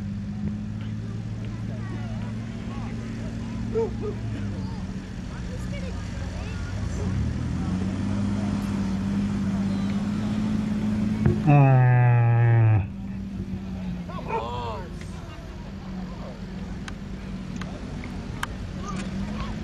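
Jeep Wrangler Rubicon's 4.0-litre inline-six running at low revs with a steady hum as it crawls over dirt mounds, getting a little louder as it passes close. About two-thirds of the way through, a loud call falls in pitch for about a second, and a short laugh is heard early on.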